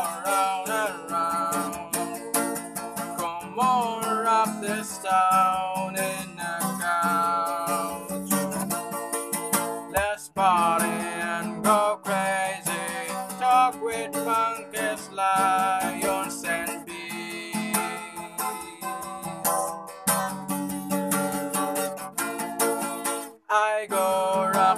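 Acoustic guitar strummed steadily with a person singing over it. The playing breaks off for a moment about ten seconds in and again just before the end.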